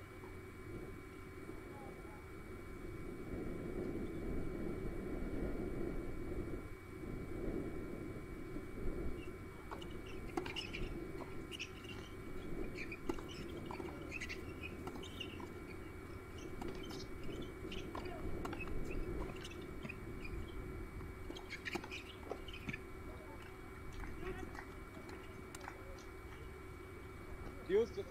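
Outdoor tennis-court ambience: a low murmur of distant voices, then from about ten seconds in a scatter of short high chirps and light taps lasting about twelve seconds.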